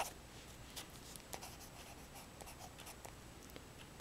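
Faint scratching of a metal pen nib on card as a signature and the year are written, in short separate strokes.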